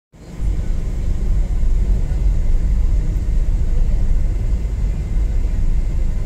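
A car driving along a road, heard from inside the cabin as a steady low rumble.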